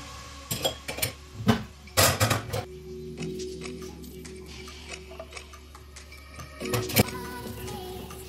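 Background music, with clinks and knocks of metal gas-stove burner parts being handled on the stainless hob: several in the first two and a half seconds and one sharp knock about seven seconds in.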